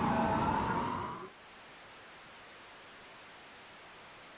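A falling high tone over a low rumble ends a little over a second in, leaving a steady faint hiss of white-noise static.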